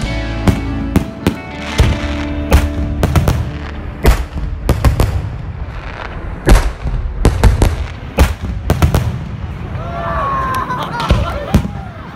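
Fireworks display: a rapid, irregular series of sharp bangs from aerial shells bursting, the loudest about six and a half seconds in.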